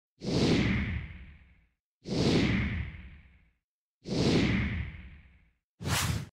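Intro logo sound effects: three whooshes about two seconds apart, each rising fast and fading over about a second and a half, then a shorter, sharper swoosh near the end.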